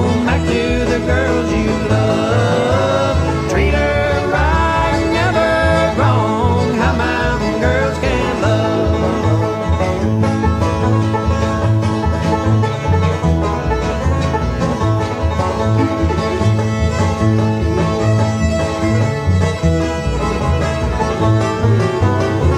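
A bluegrass band playing an instrumental break with no vocals: banjo picking over guitar, with a bowed string lead. Gliding notes come in the first several seconds, over a steady low bass pulse.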